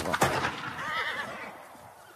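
A single sharp rifle shot, then a horse whinnying with a wavering call that fades out within about a second.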